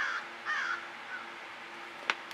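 A crow cawing: two caws about half a second apart at the start, then a fainter short call.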